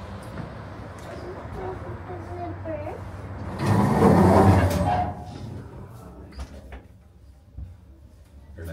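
Elevator doors sliding, heard as one loud rush of noise lasting about a second, starting about three and a half seconds in, over faint background voices.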